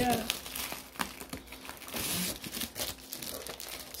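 Clear plastic wrapping crinkling as a stack of plastic-bagged, slabbed comic books is handled and lifted out of a cardboard box, with irregular crackles and sharp taps.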